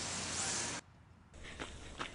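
A steady hiss that drops out sharply for about half a second near the middle, then returns with a few faint clicks.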